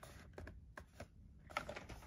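Faint, scattered light clicks and taps of cardboard packaging boxes being handled and shifted, several small knocks about a second apart or closer.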